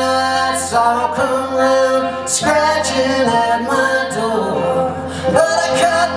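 Live acoustic string band playing: fiddle, five-string banjo, acoustic guitar and upright bass, with voices singing over them.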